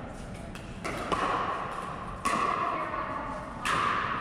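Pickleball paddles striking a plastic ball in a rally: about four sharp pops roughly a second apart, each ringing on with echo in a large indoor hall.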